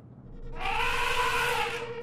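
A woman's long, drawn-out wail, rising and then falling in pitch, over a steady held note of background music.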